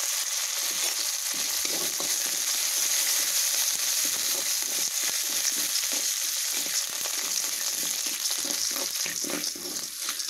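Split lentils, curry leaves and chopped green chillies sizzling in hot oil in a metal kadai, with a steel slotted spoon stirring and scraping across the pan in repeated strokes.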